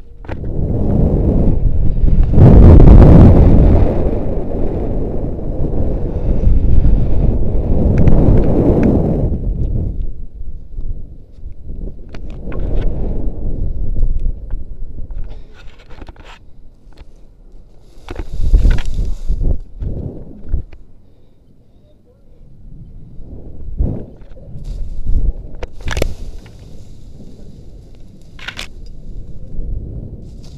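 Wind rushing over the jumper's body-worn camera microphone during a rope jump's fall and swing. It is loud for about the first ten seconds, then fades to a quieter rush broken by a few short knocks and rustles as the swings slow.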